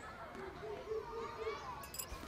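Faint distant voices of children playing, with wavering calls and chatter.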